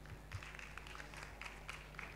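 Light, scattered applause from a seated audience, faint and uneven, with single claps standing out.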